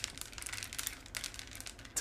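Very long fingernails clicking against one another as they are lifted and spread: many light, irregular clicks.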